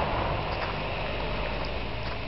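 Steady rushing noise of a small rocky brook flowing over stones.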